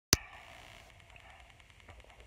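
A single sharp click just after the start, then faint room noise with a faint hum that fades out within the first second.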